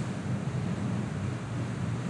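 Steady, even background noise with a low rush, like room tone or microphone noise, and no other event.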